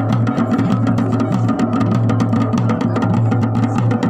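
Dhol drums played in a fast, dense, unbroken rhythm for a Garhwali deity dance, over a steady low drone.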